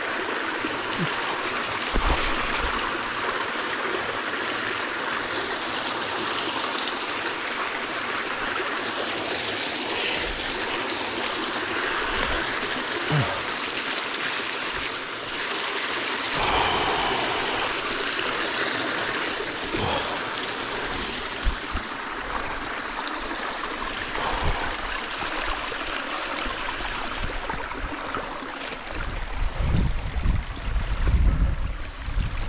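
Shallow stream running over stones close by: a steady rush of water, with a few brief knocks.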